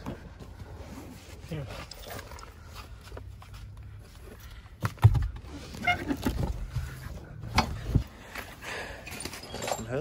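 Indistinct low voices with a few sharp knocks and thumps, the loudest about five seconds in and another near eight seconds, from hands and tools working on a car's rear seat and seatbelt anchor.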